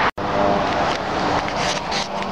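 Road traffic: a motor vehicle going by, a steady rush of noise with a faint engine hum, after a brief dropout at the very start.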